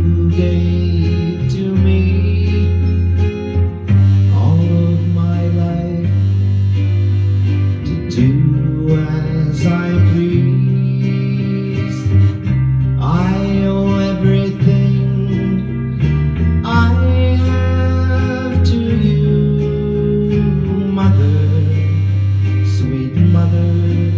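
Recorded country backing track led by guitar, with a held bass line changing notes every couple of seconds, playing before the vocal comes in.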